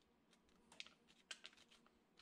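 Faint, scattered small clicks and scrapes over near silence: a metal spoon scraping seeds and pulp out of a pumpkin quarter, with seeds dropping into a plastic bowl.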